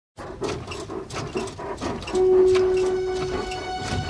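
Bedsprings squeaking in a quick rhythm, about three squeaks a second, as a child bounces on a bed. From about two seconds in, sustained music notes come in over them.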